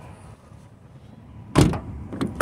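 A car door handle pulled and the latch releasing with one sharp clack about one and a half seconds in, after a stretch of faint outdoor background noise.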